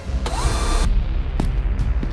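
Cartoon sound effects for a time-travel arrival: a steady deep rumble, with a bright hissing burst and a short rising whine about a quarter second in, and a sharp click near the middle.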